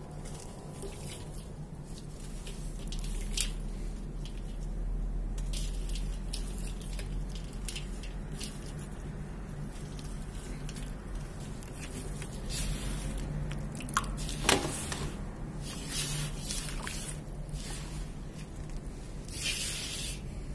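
Hands crumbling a wet block of dirt-and-cement mix into shallow water in a metal basin: gritty crumbs trickling and dripping into the water, with squishing of the wet mud. Two sharp crunchy snaps about two-thirds of the way in, and a burst of splashing near the end as the hands swish through the muddy water.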